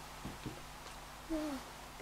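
A girl's short hummed 'ooh', falling in pitch, about one and a half seconds in, after two faint soft taps.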